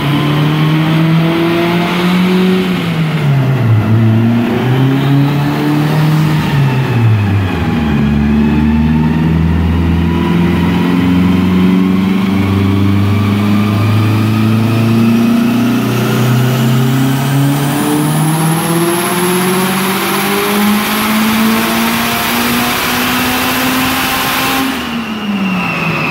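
Stock-block Mitsubishi 4G63 four-cylinder running on E85, revved up and down twice, then pulled in one long, steady climb through the revs on a chassis dyno, with a high whine rising alongside. The revs drop off near the end.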